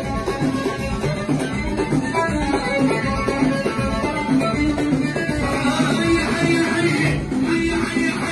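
Moroccan chaabi band playing live: hand percussion keeps a steady, busy beat under a keyboard melody.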